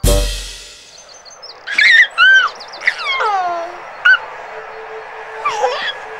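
A loud hit with a low booming tail, then a run of squeaky, whistle-like sound effects that swoop up and down in pitch, some falling steeply. A steady held tone comes in about halfway through.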